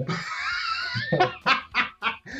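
A high, wavering squeal lasting about a second, then hearty laughter from men in short bursts.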